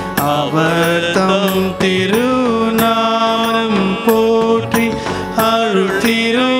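A devotional hymn sung in a chant-like style, with held and gliding notes over instrumental accompaniment with a regular beat.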